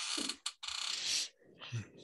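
Short, irregular clicking and scraping handling noises close to the microphone, with a sharp click about half a second in.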